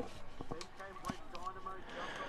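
Faint voices talking in the background, well below the level of the race commentary, with a few soft clicks.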